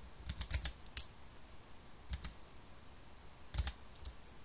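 Computer keyboard keystrokes: a quick run of taps in the first second ending in a sharper one, a pair of taps just after two seconds, and another short cluster near the end.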